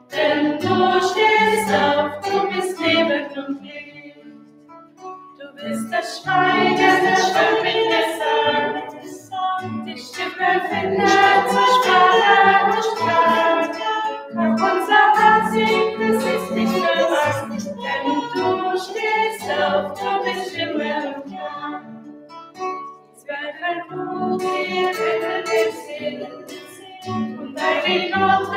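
A small group singing a hymn together to acoustic guitar, with two short breaks between phrases.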